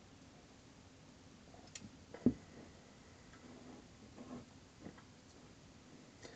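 Quiet room with the faint sounds of a man drinking beer from an aluminium bottle: soft gulps, with a single short knock about two seconds in.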